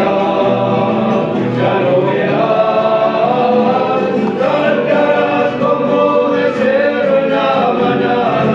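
Men's gospel vocal group singing a Christian song together in several voices.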